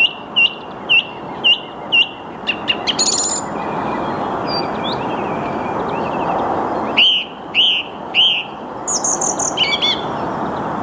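Song thrush singing: one clear whistled note repeated over and over, about two a second, then a quick twittering phrase. After a pause, a new note is repeated three times, followed by a fast twittering run near the end, the phrase-repeating pattern typical of song thrush song.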